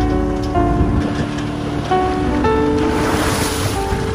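Slow keyboard music, with held notes changing about twice a second, laid over a steady low rumble and hiss that swells near the end.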